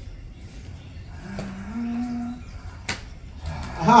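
A single long animal call, rising slightly in pitch, about a second long in the middle, followed by a sharp click.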